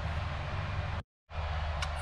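Steady low machine hum with a broad hiss. The sound drops out completely for about a quarter of a second, a little after one second in, then returns unchanged.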